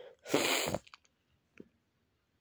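A single loud sneeze: a brief voiced intake, then a half-second burst, from a woman who is down with flu. A couple of faint clicks follow.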